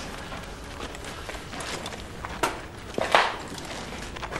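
Scuffling movement of soldiers over a rubble-strewn floor above a steady low background noise, with two short sharp knocks about two and a half and three seconds in, the second the louder.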